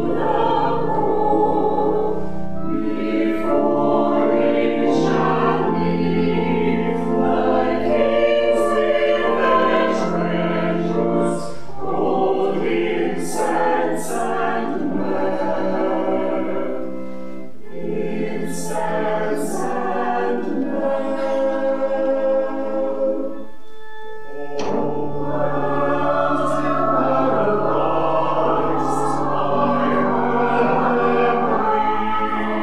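Mixed church choir of men's and women's voices singing together in sustained phrases, with a short break about three-quarters of the way through before they carry on.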